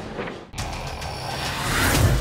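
A whoosh transition effect that starts abruptly about half a second in and swells louder, leading into the logo's music sting. Faint onboard sailboat noise comes before it.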